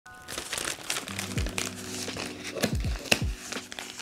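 Plastic mailer packaging crinkling as a parcel is handled, over music with a sustained low note and a few deep, falling bass hits.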